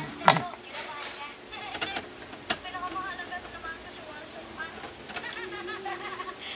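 Untranscribed voices talking in the background, with a loud, brief falling squeal about a third of a second in and a few sharp clicks and knocks later on.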